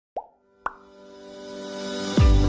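Logo intro jingle: two short pops about half a second apart, then a sustained chord that swells steadily louder.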